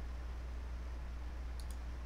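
Two quick, light computer mouse clicks about one and a half seconds in, over a steady low electrical hum.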